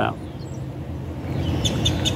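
Outdoor background noise in a pause between words: a steady low rumble, with a few short, high chirps near the end.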